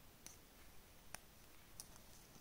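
Near silence with three faint clicks, the middle one the loudest, from hands working a steel crochet hook and a plastic stitch marker in the yarn.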